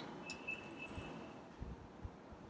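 A quiet room pause with a faint, brief high-pitched ring soon after the start and a few soft low knocks.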